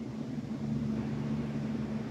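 A steady low hum over faint room hiss, growing slightly stronger about half a second in.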